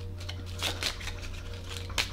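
A small deck of cards being shuffled by hand, with a few soft card clicks about halfway through and again near the end, over a low steady hum.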